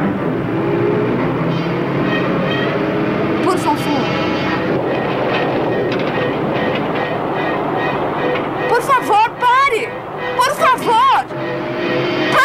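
A Jeep's engine and road noise heard from inside the open cab, steady, under a tense music score. From about nine seconds in, a woman's voice calls out in short bursts that rise and fall in pitch.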